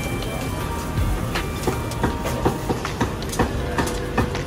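Busy hawker-stall clatter: irregular knocks and clinks of utensils, containers and dishes over a steady background hum.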